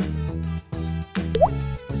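Background music with a steady beat, and a quick rising cartoon sound effect about one and a half seconds in.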